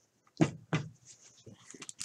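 Two sharp knocks on the desk as a wax-paper baseball card pack is taken up from its plastic stand, then light crinkling of the wax wrapper in the hands near the end.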